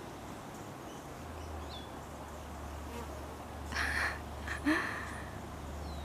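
A hummingbird's wings humming, a low steady hum that sets in about a second in. Two brief noisy sounds a little past the middle.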